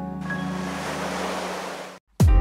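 Ocean surf rushing over rocks, starting just after the beginning and cut off suddenly at the end, over soft background music.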